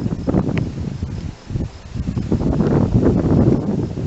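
Wind buffeting an outdoor camera microphone: an irregular low rumble with rustling, easing briefly about one and a half seconds in.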